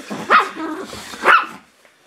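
Russian Toy Terrier barking twice, short high barks about a second apart, while playing with a plush toy.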